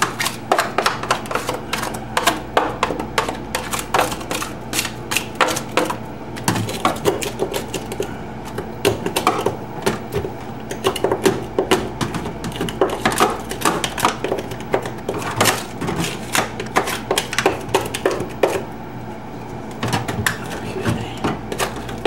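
A five-in-one tool chipping and scraping ice out of a freezer's clogged defrost drain hole: rapid, irregular clicks and knocks of metal on ice and plastic, over a steady low hum.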